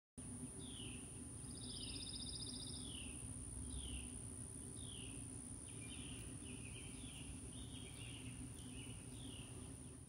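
A bird calling: short falling whistled notes repeated about once a second, with a brief higher trill near the start, over steady low background noise.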